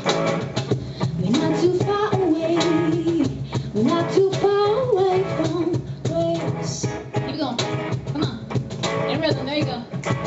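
Live band music: a woman singing a melody that starts about a second in, over electric guitar chords and a steady beat tapped on a cajón.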